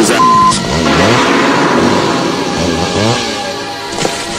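A cartoon chainsaw sound effect running and revving over background music, with a short censor beep near the start.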